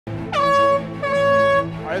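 Air horn sounding two blasts of about half a second each, the first starting with a quick downward slide in pitch.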